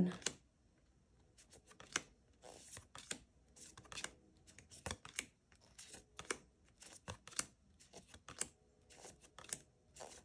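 Tarot cards being flipped through one at a time by hand: faint, irregular snaps and slides of card stock, about one or two a second.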